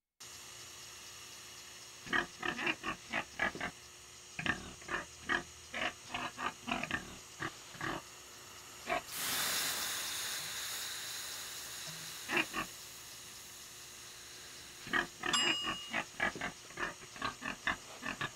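A pig grunting in quick runs of short grunts, several a second. About nine seconds in comes a sudden loud hiss of steam off hot sauna stones, fading over a few seconds, and then more grunts near the end.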